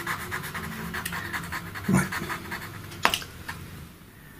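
Pastel pencil scratching on pastel paper in quick, short strokes, around ten a second, laying in dark fur. A single sharp click sounds a little after three seconds in.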